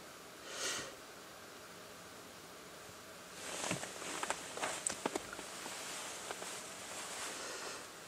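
Faint handling noise in a car: a short soft hiss near the start, then rustling with a quick string of small clicks for a few seconds as a handheld thermometer and camera are moved about.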